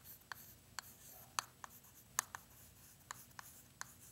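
Chalk writing on a chalkboard: quick, irregular taps and light scratches as letters are written, about three taps a second, faint overall.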